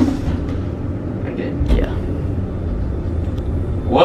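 Traction elevator car riding upward, heard from inside the cab as a steady low rumble that swells about one and a half seconds in as the car gets under way.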